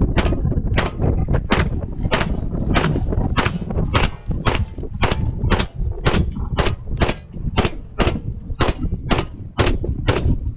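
Shots from a 9mm MAC-style gun on a DIY carbon-alloy upper, fired one at a time at a steady pace of about two a second. A steady low rumble runs underneath.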